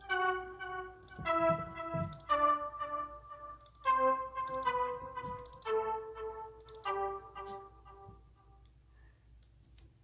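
A sampled strings instrument in a DAW sounding single notes one after another as each is entered in the piano roll, about one a second and mostly stepping down in pitch, with faint mouse clicks. The notes stop about eight seconds in.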